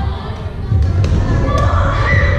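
Badminton play in a reverberant gymnasium: a few sharp clicks of rackets striking shuttlecocks over a heavy low rumble of thuds, with voices in the background.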